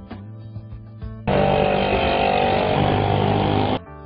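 Light background music, then about a second in a loud, buzzy vehicle-engine sound effect that runs for about two and a half seconds and cuts off abruptly just before the end.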